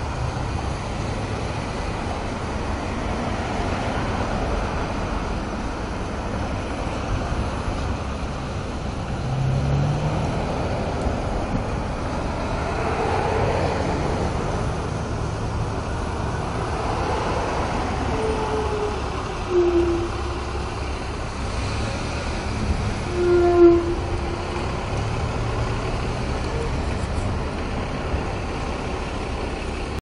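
Street traffic at an intersection: a steady rumble of passing vehicles, with engines swelling and fading as they go by. Two short pitched squeals stand out in the last third, the second one louder.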